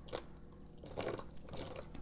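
Rinse water poured from a plastic cup over an orchid's bare roots, trickling faintly into a plastic basin with a few soft splashes and drips.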